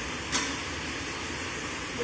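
A pause in speech: steady low hum and hiss of room tone, with one brief click about a third of a second in.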